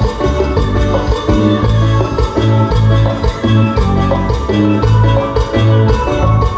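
Loud amplified dance-band music: an instrumental melody over a steady bass and drum beat pulsing about twice a second, with no singing.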